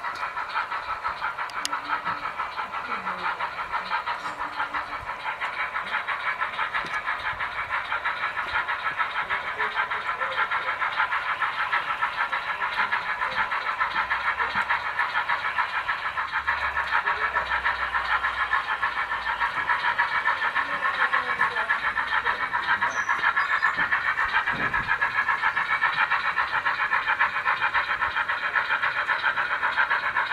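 O gauge model steam locomotive running with a DCC sound decoder, its speaker playing a steady chuffing exhaust beat at a fast, even rate, thin and high-pitched as from a small speaker.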